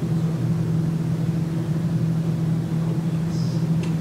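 A steady low hum in the room, with no speech over it.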